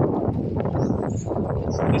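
Wind buffeting the microphone of a handheld camera on a moving bicycle: an uneven, gusty rumble.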